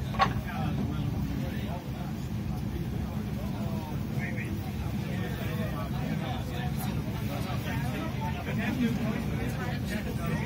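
Steady low rumble of a passenger train running slowly into a station, heard from inside the carriage, with faint passenger chatter.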